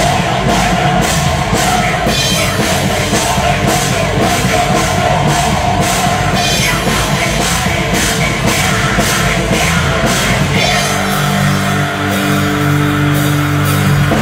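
Live rock band playing loud, with electric guitars and a drum kit pounding out a fast beat. About ten and a half seconds in, the fast drumming gives way to long held chords.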